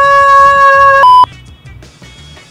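A man's voice singing one long, high 'aaah' note held at a steady pitch, which cuts off abruptly about a second in with a brief higher blip. Faint background music carries on underneath.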